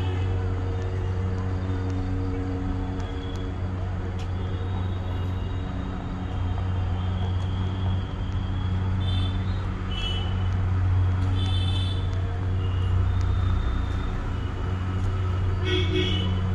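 Steady low engine drone that does not let up, growing slightly louder partway through.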